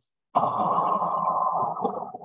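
A sound effect from a children's phonics app on a tablet, played as the loaded train car closes: one steady sound lasting about two seconds that stops near the end.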